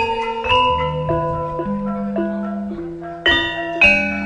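Javanese gamelan music: bronze metallophones strike a melody of ringing notes, about two a second, over held low tones.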